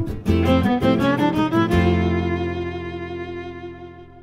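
Closing bars of an instrumental 1930s-style swing jazz tune: a rising violin run over strummed guitar chords, then a final held chord that fades out.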